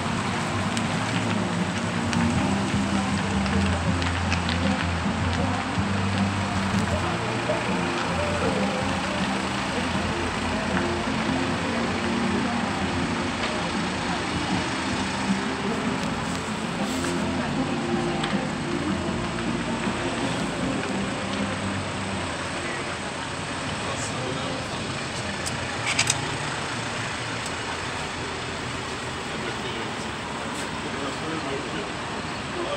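Steady city street noise with indistinct voices mixed in, and one brief sharp click near the end.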